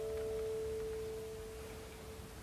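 Final chord of a classical guitar trio dying away, with one pure note ringing on alone and slowly fading out.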